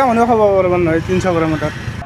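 A man speaking Assamese over a low, steady background rumble.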